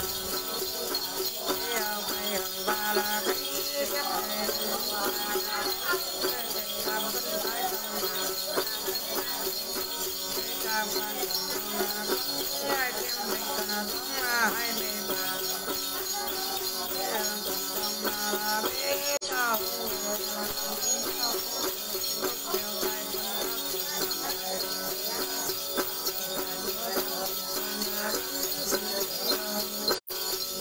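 Tày-Nùng Then ritual singing: a woman's voice sings over the plucked đàn tính gourd lute, with the steady jingling of a xóc nhạc bell rattle shaken throughout.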